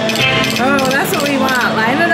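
Brian Christopher video slot machine spinning its reels and landing them, with the machine's electronic sound effects. A voice-like sound with a gliding pitch comes in over it from about half a second in.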